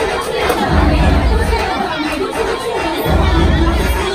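Loud hip hop club music with heavy bass, under a crowd talking and shouting over it at a packed nightclub bar.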